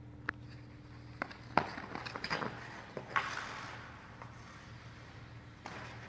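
A junior composite hockey stick knocking against a puck and the ice in a run of sharp clicks, the loudest about one and a half seconds in, with skate blades scraping the ice in a short hiss around three seconds, over a steady low hum.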